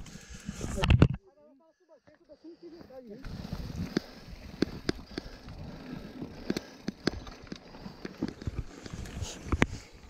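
Mountain bike rolling over a rough dirt trail, heard from a camera mounted on the handlebars: a steady rushing noise with frequent sharp clicks and knocks as the bike rattles over bumps. About a second in, a burst of loud handling noise cuts off into a brief near-quiet gap before the riding sound takes over.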